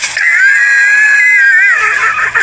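A person's long, high-pitched scream, held for about a second and a half and wavering near its end.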